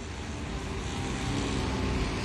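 Steady rumble of street traffic, a motor vehicle passing and growing slightly louder.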